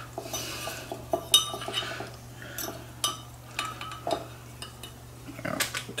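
Chopsticks clicking and scraping against a bowl of noodles, with a scattering of sharp clinks.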